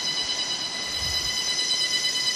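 A steady high-pitched buzz with a ladder of even overtones, unchanging throughout, with a soft low thump about a second in.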